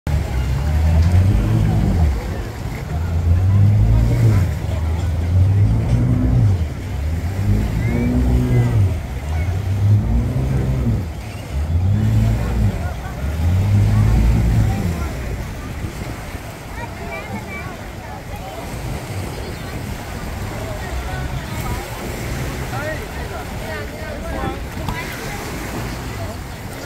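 Speedboat outboard motors running at the shoreline, a low engine drone that swells and falls in pitch about every two seconds. After about 15 s the engines fade, leaving the chatter of a beach crowd and light surf.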